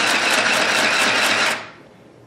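Dressmaker 2 mini sewing machine running fast, stitching through fabric with a rapid, even stroke of the needle, and noisy for its size. It stops about one and a half seconds in.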